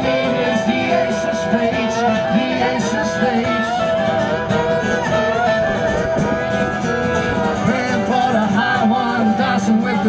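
A live band playing a country-style cover with plucked acoustic strings to the fore.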